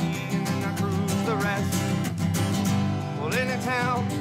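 Country song played on two strummed acoustic guitars and a piano accordion, with a voice singing a rising phrase near the end.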